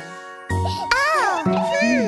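Children's song music with light jingling chimes; about half a second in, a cartoon child's voice comes in over it with drawn-out, gliding vocal sounds.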